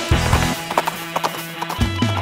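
A horse's hooves clip-clopping in irregular knocks, over guitar background music.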